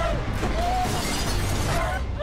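Objects crashing and shattering as a bedroom is violently trashed, over a low music bed.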